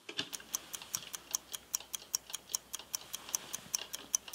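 An analog chess clock ticking steadily, about five ticks a second.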